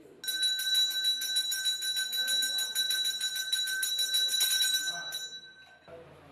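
Temple hand bell rung rapidly and continuously during an aarti, giving a steady high ring with quick even strokes. It stops abruptly shortly before the end.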